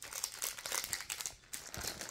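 Hockey card pack wrapper crinkling and tearing as it is pulled open by hand: an irregular run of small crackles.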